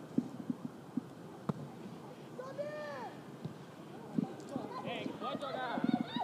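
Pitch-side sound of a football match: light thumps of feet and ball on grass, with a sharper knock about one and a half seconds in as the ball is struck for the free kick. Players then shout and call to each other, briefly around the middle and again near the end.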